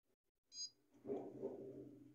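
A short high electronic beep from the Xerox 5755 photocopier's touchscreen as a button is pressed, followed about half a second later by a low steady hum lasting a little over a second.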